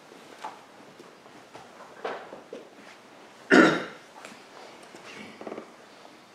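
One loud, short cough-like sound from a person's throat about three and a half seconds in, amid a few soft handling sounds of a book and robe cloth.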